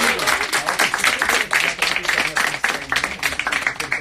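Audience applauding with dense, rapid clapping that stops abruptly at the end.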